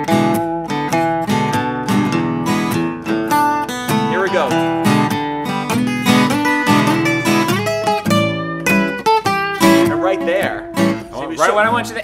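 Two acoustic guitars playing a blues in E. One strums the rhythm while the other plays double stops, pairs of notes on the G and high E strings, through E7 chord voicings into the change to the A7 four chord.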